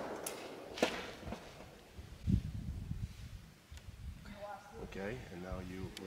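Faint knocks of a wooden ramrod against a flintlock smoothbore's barrel as a cushion wad is started down the muzzle: a sharp click about a second in and a dull thump a little over two seconds in. The echo of a loud bang is dying away at the very start, and quiet talk begins near the end.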